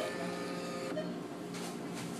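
Claw crane machine's electric motor whirring steadily over a low hum.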